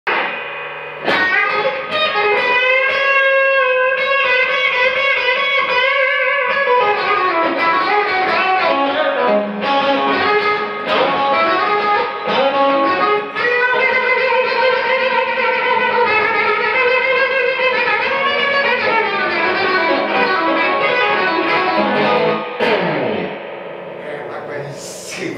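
Stratocaster-style electric guitar played solo as a lead line of sustained notes with string bends gliding up and down in pitch. It comes in about a second in and dies away shortly before the end.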